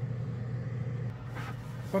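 Timbertech AS18-2 single-piston airbrush compressor running with a steady low hum.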